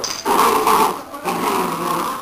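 Belgian Shepherd puppies making play growls and whimpers in a short, uneven run of small vocal sounds, with a brief break about a second in.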